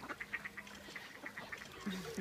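Mallard ducks quacking faintly and on and off, a scatter of short calls.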